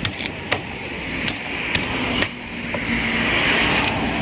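Meat cleaver chopping roast suckling pig on a thick round wooden chopping block: about six sharp chops, unevenly spaced, roughly two a second.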